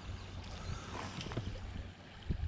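A shallow stream flowing, with wind rumbling on the microphone. There are a few faint light ticks.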